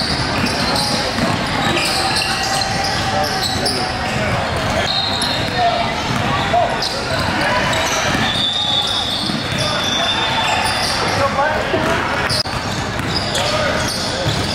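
Basketball being dribbled on a hardwood gym floor during play, among the shouts and chatter of players and spectators, echoing in a large hall.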